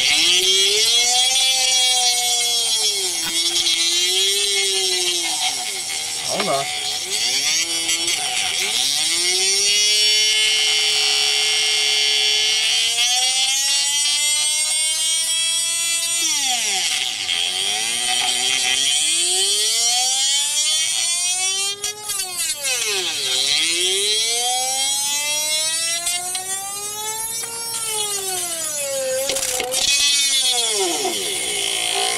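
Rodin coil sphere-spinner pulse motor whining as the metal ball spins in its copper ring: a high whine whose pitch climbs and falls again several times as the ball speeds up and slows, with a steady hiss over it.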